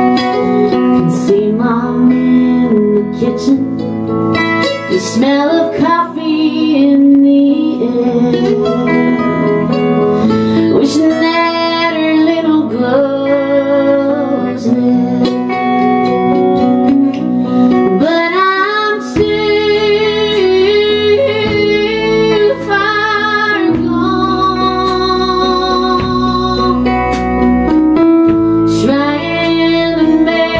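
Live country song: a woman singing over a strummed acoustic guitar, with a backing band of bass and electric guitar.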